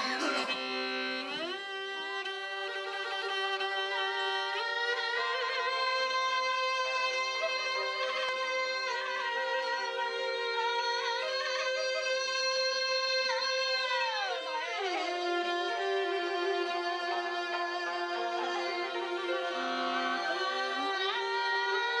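Traditional Mongolian music led by a bowed morin khuur (horsehead fiddle), playing long held notes with slow pitch slides, a rise near the start and a fall about two-thirds through.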